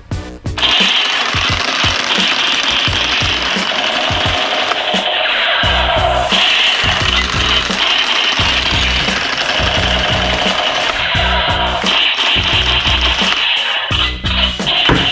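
Electronic toy rifle's built-in sound effect: a loud, rapid, repeating gunfire sound from its small speaker, starting about half a second in and running on, over background music with a steady beat.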